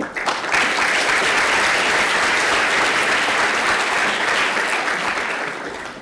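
Audience applauding in a large hall, many hands clapping. It starts abruptly, holds steady and thins out near the end.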